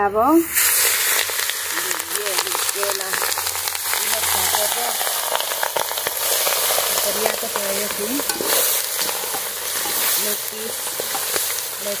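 Chicken pieces frying in hot oil in an iron wok, bursting into a loud, steady sizzle about half a second in as they hit the hot pan, with crackles and the scrape of stirring throughout.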